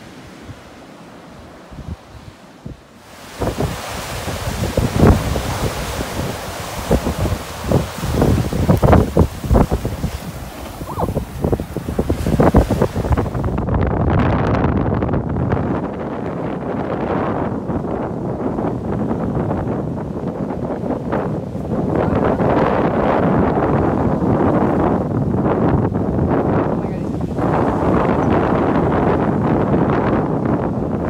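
Wind buffeting the microphone in strong, irregular gusts over the steady wash of surf breaking on a beach. It is quieter for the first few seconds, then gusts hard, then settles into a steadier roar from about halfway.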